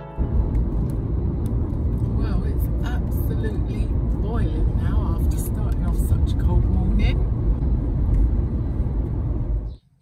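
Car driving along a road, heard from inside the cabin: steady low road and engine noise, with a voice or radio faintly over it in the middle. It cuts off suddenly just before the end.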